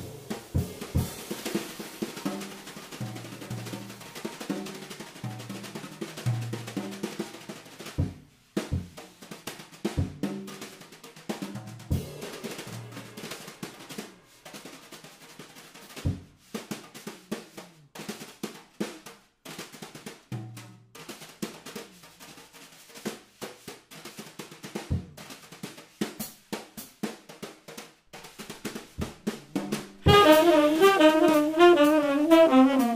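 Drum kit played solo: fast snare strokes and tom fills, with heavy bass-drum hits every few seconds.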